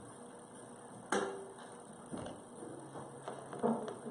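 A heavy book knocking once onto a wooden altar stand about a second in, with a short ring after it. Softer knocks and shuffling follow in a quiet, echoing church.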